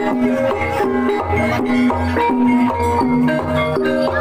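Gamelan-style ebeg accompaniment: a melody of struck keyed percussion notes over a regular low drum beat.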